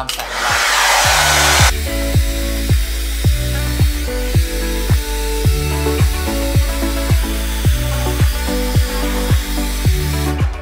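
Handheld hair dryer blowing, loud for about the first second and a half. It then carries on lower beneath background music with a steady beat.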